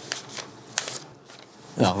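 Sheets of paper rustling as they are handled and laid out on a table, a few short rustles in the first second.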